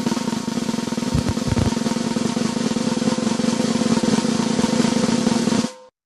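Recorded snare drum roll sound effect: a fast, even roll with a few low thumps about a second in, cutting off abruptly near the end.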